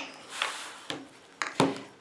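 Clear plastic quilting arc rulers being slid across a tabletop and set down against each other, giving a brief rub and then a few light clacks.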